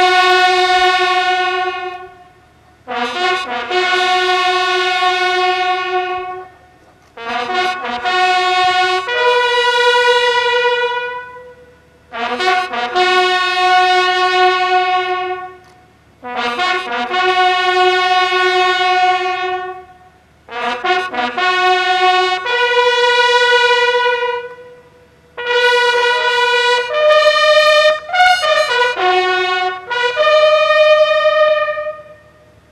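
Ceremonial bugle call sounded in unison by a line of military buglers. It comes in phrases of a few notes, each ending on a long held note, with short breaks between them, and the notes come quicker in the last phrase near the end.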